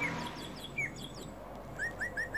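Small birds chirping in the background: scattered short, high, falling chirps, then near the end a quick run of identical repeated notes.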